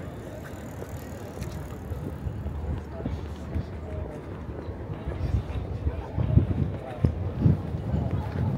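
Open-air city street ambience on a pedestrian bridge: a steady low rumble with faint voices of passers-by, and stronger low thumps in the second half, the loudest about six and seven and a half seconds in.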